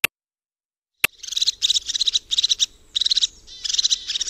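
A clock ticks at the start and again, more loudly, at about a second in. Then a crested tit calls: a quick series of short, very high, rapid bubbling trills, the fast chattering that sets its voice apart from other tits.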